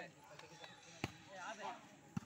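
A single sharp slap of a volleyball being struck by hand, about halfway through, amid faint voices of players.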